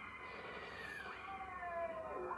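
Sound from a television's speaker: one long, drawn-out, voice-like pitched tone that slowly slides down in pitch.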